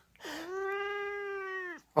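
Siamese cat giving one long meow that rises at the start, holds a steady pitch and dips as it ends; it is her answer to a pretend sneeze.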